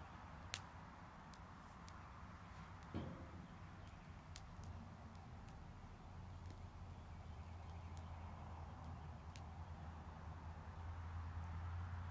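Quiet outdoor background with a steady low hum, a few faint scattered clicks, and a soft knock about three seconds in.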